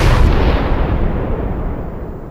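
A loud explosion-like boom sound effect in the music mix as the track cuts off, its noisy rumble fading steadily away.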